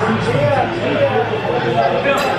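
Voices of several people talking in the background, an indistinct mix of speech filling a busy room.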